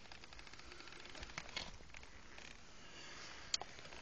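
Faint gritty crackling and small ticks of broken clay tile chips and loose soil being laid and pressed over a clay drain pipe, with one short sharp click about three and a half seconds in.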